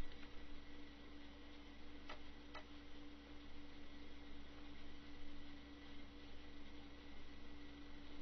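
Faint steady electrical hum and hiss of the recording chain, with two short clicks about half a second apart a little over two seconds in.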